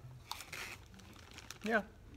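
Cheetos Puffs snack bag crinkling in a couple of short rustles in the first second as a hand reaches in for a puff.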